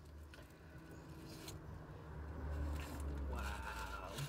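Quiet rustling and scraping of takeout food packaging being handled, over a low rumble that swells in the second half.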